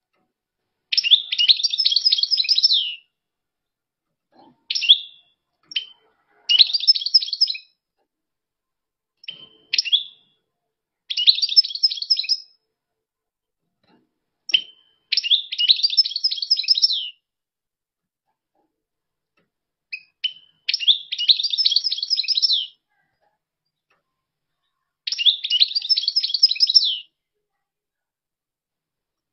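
European goldfinch singing: a fast, high twittering song given in about six phrases of a second and a half to two seconds each, a few seconds apart, several of them introduced by a short call note.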